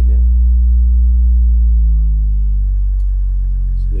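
Low sine test tone from a studio monitor, held at about 60 Hz and then sliding down about two seconds in to about 43 Hz. 43 Hz is the tuning of the 12-inch PVC pipe Helmholtz resonator being tested.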